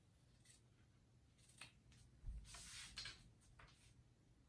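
Sharp fabric scissors cutting through the sewn layers of a tote bag in faint snips, about five of them, the longest about halfway in.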